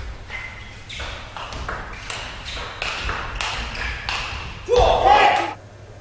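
Table tennis rally: the ball clicks back and forth in quick alternation off the paddles and the table. The rally ends about five seconds in with a short, loud shout as the point is won.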